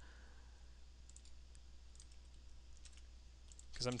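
Faint computer mouse clicks, scattered and irregular, over a low steady hum.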